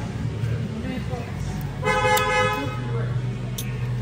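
A vehicle horn sounds once, a steady honk of under a second about two seconds in. Voices and a steady low hum run underneath.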